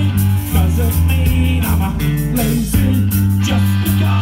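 Punk rock band playing live: two electric guitars, bass guitar and drums, loud and steady with regular drum hits.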